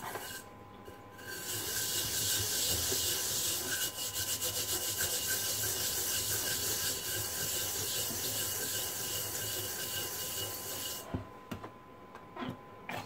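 The metal base of a frying pan being scrubbed hard by hand, a steady rasping rub that starts about a second in and stops near the end. The scrubbing is working off blackened, burnt-on residue from the underside of the pan.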